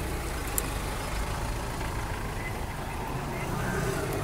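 Steady low rumble of a motor vehicle, even throughout.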